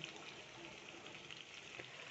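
Faint, steady sizzling of swordfish steaks simmering in tomato sauce in a frying pan.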